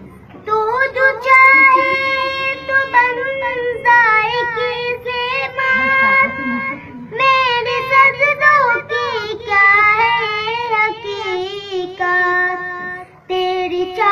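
A young boy singing a nasheed solo without accompaniment, in long held, wavering notes with short breaks for breath.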